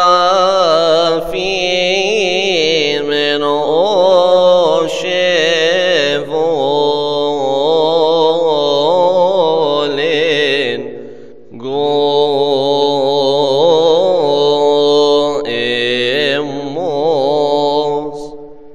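A man chanting a Coptic Orthodox hymn solo, in long melismatic lines with a wavering, ornamented pitch. He breaks off briefly for breath about eleven and a half seconds in.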